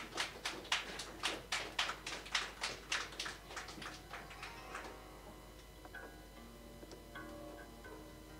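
A percussion instrument played in a steady rhythm of sharp clicking or shaking strokes, about three a second, fading away after about four seconds. A few soft held instrument notes follow near the end.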